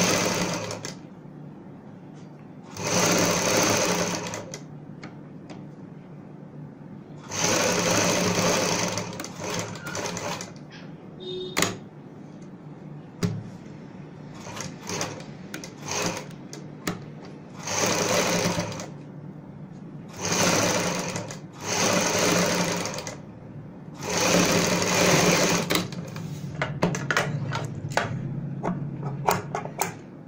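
Domestic sewing machine stitching a seam in short runs of one to two seconds, about seven times, with pauses and small handling clicks between runs as the fabric is turned.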